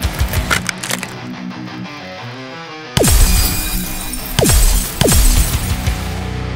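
Cartoon ice-forming sound effects, cracking and shattering, over dramatic background music. The music goes muffled and quieter, then comes back loud about halfway through with three deep hits that fall in pitch.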